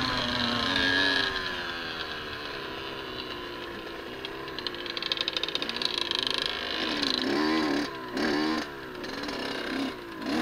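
Dirt bike engine with the throttle closed, its pitch falling over the first couple of seconds, then running low. A rapid rattle comes in the middle, and there are short throttle blips, rising and falling, near the end.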